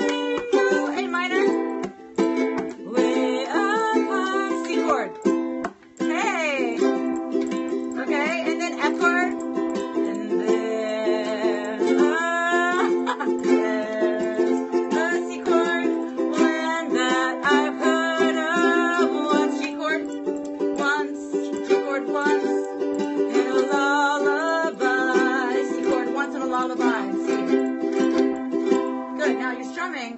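Ukulele strummed in a steady chord rhythm, with a woman singing a melody over it.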